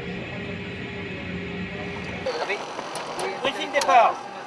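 A steady machine drone with a few held tones, the sound of equipment running beside a parked airliner on the ramp, which cuts off a little over two seconds in. It is followed by voices over a quieter background.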